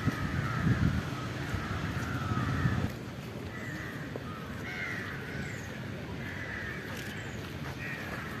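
Crows cawing repeatedly in the background. A low rumble is louder over the first three seconds and stops suddenly about three seconds in.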